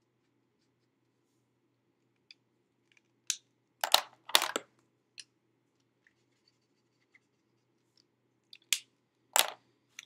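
A few short, sharp clicks of alcohol ink markers being capped, uncapped and set down on a craft mat: three close together around the middle and two more near the end.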